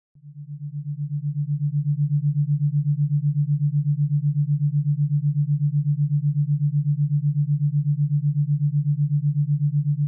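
A low, steady electronic hum, a single pure tone pulsing rapidly and evenly, that fades in over the first two seconds and then holds at one level.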